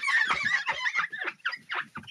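A wipe squeaking against a glass craft mat as it is rubbed hard back and forth, a rapid run of short squeaks: the mat being cleaned of ink.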